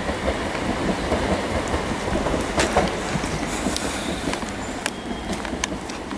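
Class 377 Electrostar electric multiple unit running away along the line: a steady rumble of wheels on rail, with a few sharp clicks.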